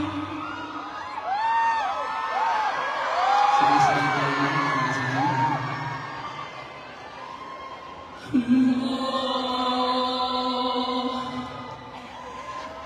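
Live concert heard through a phone's microphone: audience members scream and whoop in short rising-and-falling calls over soft band music in the first half. About eight seconds in, a male singer comes in on a long held note over the band.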